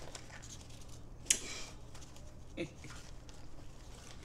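A person's breath and mouth noises while holding extremely sour candy in the mouth: a sharp, short hiss about a second in, and a brief low grunt that falls in pitch past the halfway mark.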